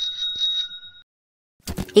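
Bicycle bell rung in a quick trill, two ringing tones that stop about a second in.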